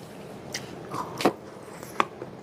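Close-miked eating sounds: a few sharp mouth clicks and smacks over a faint hiss as a forkful of food is taken off the fork and chewed.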